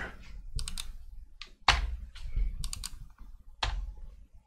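Keys being pressed on a computer keyboard: about five separate, unhurried keystrokes as numbers are typed into a form.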